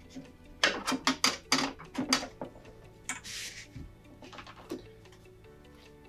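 Quick metal clicks and knocks from the mat guide of a Keencut Ultimat Futura mount cutter as it is loosened and slid back along the machine. These are followed about three seconds in by a brief rustle of mat board sliding, and then a couple of soft ticks.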